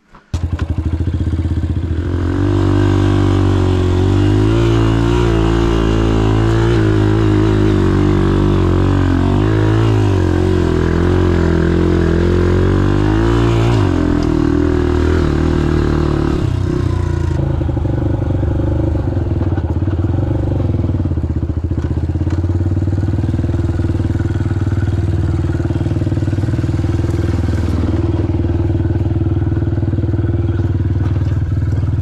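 Honda CRF150F single-cylinder four-stroke dirt bike engine under way, cutting in abruptly at the start. Its revs rise and fall with the throttle through the first half, then it runs steadier.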